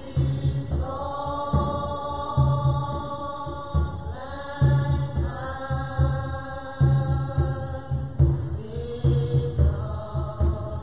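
A slow chant sung in long held notes, each lasting a few seconds, with low strokes on a tall hand drum underneath.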